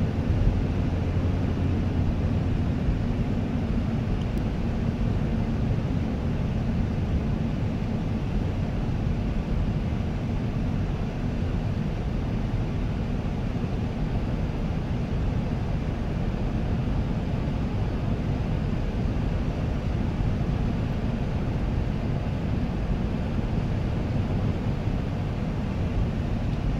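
A car driving, heard from inside the cabin: a steady low rumble of engine and tyres on the road, with no change in pace.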